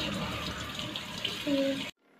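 Tap water running steadily and splashing as long hair is rinsed under it, with a brief bit of a woman's voice near the end. The water sound cuts off suddenly just before the end.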